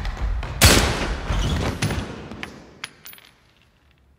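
A single gunshot about half a second in, echoing in a large, hard-walled gymnasium and dying away over about two seconds. A few light clicks follow as the echo fades.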